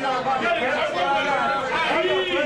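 Several people talking at once in a room: overlapping conversational chatter, no single voice standing out.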